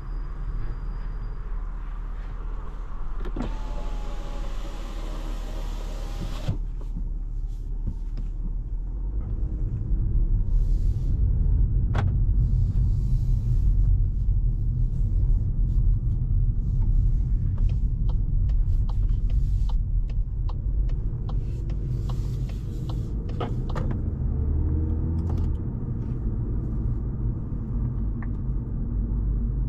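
Cabin sound of a 2024 Volkswagen Golf's 1.5 TSI four-cylinder petrol engine and tyres as the car drives off at low speed: a steady low rumble that grows louder from about ten seconds in. About three seconds in there is a few-second whirring hiss, and a few light clicks are scattered through.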